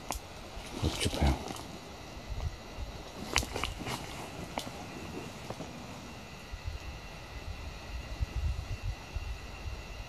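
Quiet outdoor rustling and movement in forest leaf litter: low bumps of handling on the microphone, with a few sharp clicks like snapping twigs about three to four and a half seconds in.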